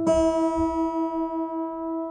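Acoustic guitar sounding a high E note, plucked once at the start, that rings on and slowly fades with a faint, even wavering. It is a by-ear tuning check of the high E string against the A string's seventh-fret harmonic, and the string is already nearly in tune.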